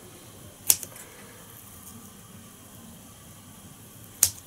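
A single short, sharp snip of small scissors about three-quarters of a second in, trimming off excess material while tying a foam beetle lure; otherwise faint room noise.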